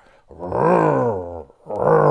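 A man's voice imitating an engine revving: two drawn-out growls of about a second each, the second falling in pitch, made as a joke while working a throttle lever.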